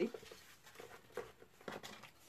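A few faint rustles and light taps of cut pieces of patterned paper being handled and laid on a table.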